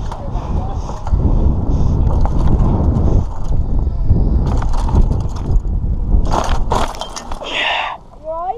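A mountain bike ridden with a helmet camera: wind buffets the camera microphone and the tyres roll over a wooden ramp and a dirt track. About six seconds in comes a quick run of clattering impacts and then a short scrape as the rider and bike crash onto the dirt.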